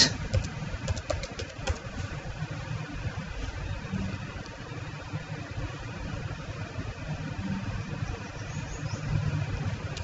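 A few computer keyboard keys clicking during the first two seconds, over a steady low background rumble.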